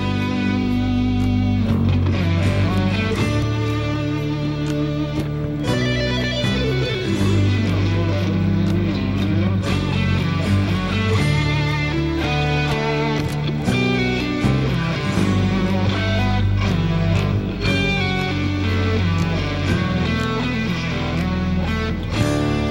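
Live instrumental guitar music: an electric guitar picks a melody over sustained low notes from a bass guitar.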